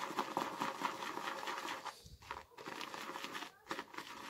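Shaving brush whisking soap lather in a ceramic shaving bowl: a rapid, wet, crackly swishing of foam, with short breaks about halfway through and near the end. These are the last few strokes that finish a thick, dense lather.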